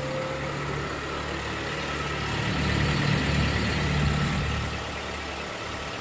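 Mitsubishi Outlander PHEV's petrol engine running while the car stands still: a low steady hum that swells louder in the middle, then eases back.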